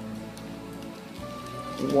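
Faint crunching as a chocolate candy bar is bitten and chewed with snap-in dentures, over faint background music.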